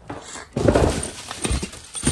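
Bubble wrap crinkling and rustling against cardboard as a bubble-wrapped part is pulled out of a shipping box, loudest from about half a second in, with a second burst near the end.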